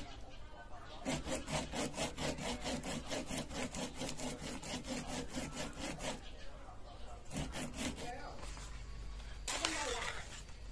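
A cob of waxy corn scraped back and forth on a homemade punched-metal grater, in a rhythmic run of rasping strokes about four a second, with a pause and a few more strokes later. A brief louder sound comes near the end.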